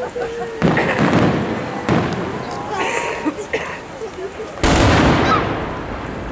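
Three booms of a fireworks salute, about half a second, two seconds and nearly five seconds in, each trailing off in a long rumble. The last one is the loudest. Spectators talk faintly between them.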